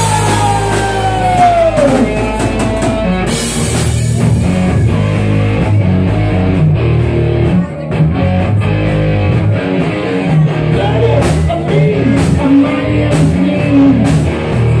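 Live rock band playing loudly: distorted electric guitar, bass and drum kit, with a falling guitar or vocal note near the start.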